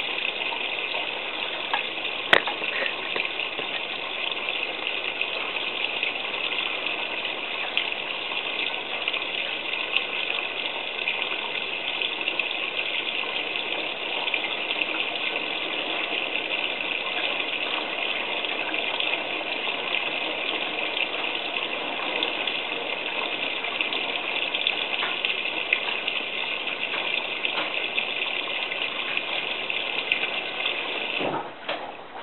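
Miele WT2670 washer-dryer mid-wash on its Cottons 95 programme, with a steady rush of water through the machine and one sharp click a couple of seconds in.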